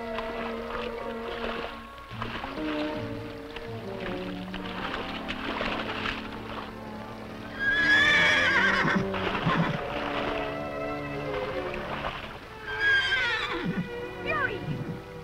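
A horse whinnying loudly over background film-score music with sustained notes. One long, wavering whinny comes about eight seconds in, and a shorter one with a falling pitch comes near the end.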